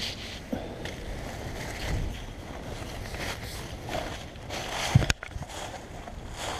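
Nylon tarp fabric and puffy jacket sleeves rustling as a tarp door panel is pulled taut by hand, with a sharp knock about five seconds in.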